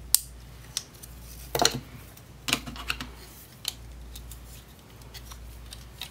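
Hard plastic parts of a FansProject Tailclub transforming robot figure clicking and knocking as the toy is folded and handled: a sharp click just after the start, then about four more scattered clicks over the next few seconds.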